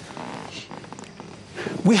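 A brief pause in a man's speech with only faint room noise and a few small ticks, then his voice resumes near the end.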